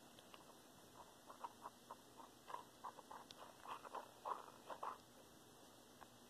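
Faint, irregular clicks and light taps, roughly a dozen over about four seconds, over quiet room tone.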